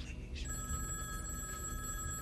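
A telephone bell ringing, starting about half a second in and holding one steady ring over a low rumble.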